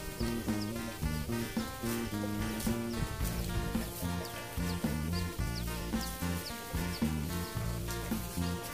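Background music with a steady beat and bass line.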